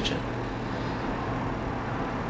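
Steady background noise with no distinct events, a pause between spoken sentences.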